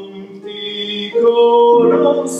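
A man singing a slow song in long held notes, accompanied on keyboard; the voice grows louder about a second in.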